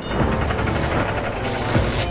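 Music mixed with mechanical sound effects of clanking, ratcheting gears from an animated outro, starting abruptly.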